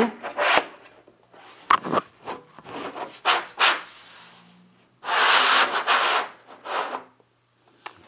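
Parts of a large-format wet plate holder rubbing and scraping as a panel is slid and seated in it, with a few short knocks; the longest and loudest scrape comes about five seconds in and lasts just over a second.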